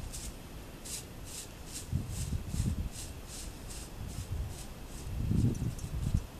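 Corn broom bristles sweeping over a horse's coat: a steady run of short scratchy strokes, about two to three a second, thinning out near the end. A couple of low muffled bumps sound underneath, about two seconds in and near the end.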